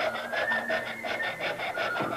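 Recorder music playing from a record: a high line that glides up, then steps down. Under it, a fast, even scraping of a sizing tool cutting into wood spinning on the lathe, about eight strokes a second.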